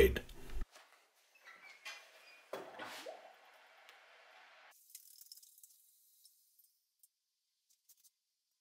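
Faint sizzling hiss of a red-hot Damascus steel spearhead being quenched in oil to harden it, with a short clunk about two and a half seconds in. The hiss stops abruptly at about four and a half seconds.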